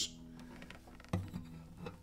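Faint ringing of a cedar-top steel-string acoustic guitar's strings left sounding in a pause, with a brief soft sound about a second in.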